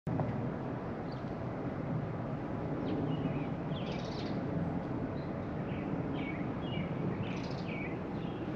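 Outdoor ambience: a steady low background rumble with small birds chirping in short bursts, a cluster about three to four seconds in and another near the end.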